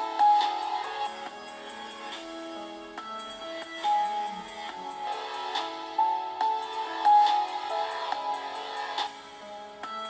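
Music with plucked notes played through the built-in speakers of an Illegear Raven SE-R laptop, picked up by a microphone in the room. The sound is thin, with no deep bass.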